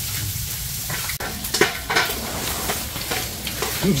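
Pork sizzling in a grill pan over a charcoal brazier, with a few sharp clicks of metal tongs against the pan.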